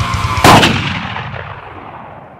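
A single loud gunshot about half a second in, its echo dying away slowly over the following two seconds.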